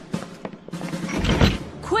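A wooden door is shut with a heavy thud about a second and a half in, after a few light clicks, over background music.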